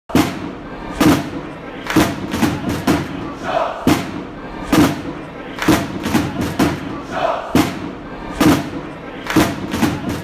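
Intro music built on heavy, stadium-style percussion. It has loud hits about once a second with lighter hits between them, and crowd-like chanting and shouts over the beat.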